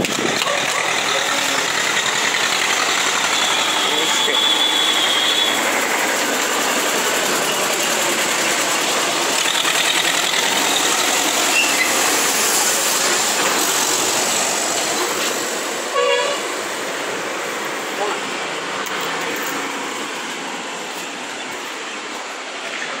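Steady street traffic noise, with a vehicle horn sounding for about two seconds near the start. The noise eases after about sixteen seconds.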